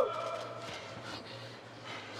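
Heavy, laboured breathing of an MMA fighter caught in a body triangle, picked up by the cageside microphones over a faint steady hum.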